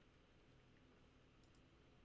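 Near silence, with two faint, quick computer-mouse clicks about one and a half seconds in.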